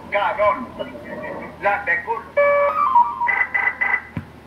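Intro sound clip number one (a "llamador de entrada") played from a CB radio caller box through a speaker: a recorded voice, then music with held notes from a little past halfway.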